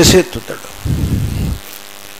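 A man's lecturing voice ends a phrase at the very start, and a brief low murmur follows about a second in. Under it a steady low hum runs throughout.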